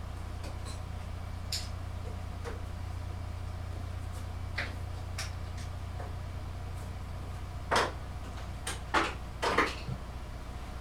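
Small plastic quick-release bar clamps being released and gathered up by hand: scattered clicks and clacks, then a louder clatter of clamps knocking together in the last two or three seconds, over a steady low hum.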